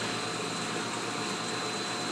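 Steady hum and hiss of aquarium pumps and filtration running, with a thin high whine held throughout.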